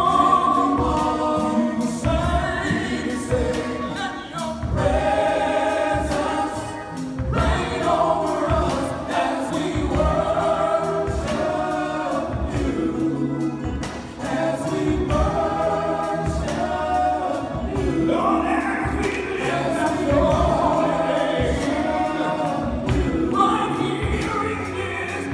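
Male gospel vocal group singing in harmony into microphones, over a steady low beat.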